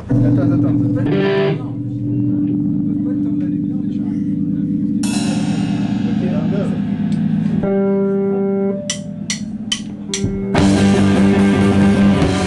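Live rock band: electric guitar chords held and ringing out, with a few sharp drum hits around nine seconds in. Near the end the full band comes in with drums and cymbals.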